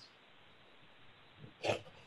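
Quiet room tone, then near the end a man's short, sharp in-breath.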